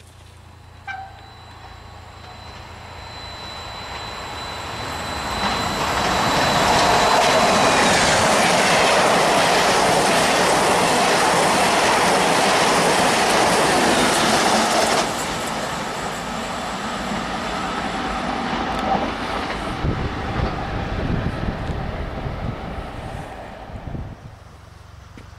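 A passenger train of coaches passing through a station at speed. The noise builds over several seconds, with a thin high tone during the approach, and stays loud for about eight seconds. It then drops suddenly and goes on lower, with wheel clatter, as the rest of the train goes by.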